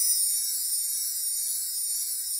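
Steady high-pitched hiss with no other sound, the noise floor of the recording.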